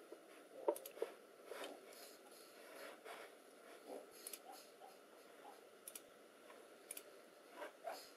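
Faint, scattered small clicks and soft scratching of a nail polish brush being worked over a fingernail, over low room tone.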